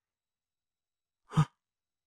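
Silence, then about a second and a half in a single short, breathy exhalation from a man, like a brief huff.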